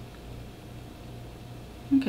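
Room tone: a steady faint low hum with no distinct sounds. A woman's voice starts just at the end.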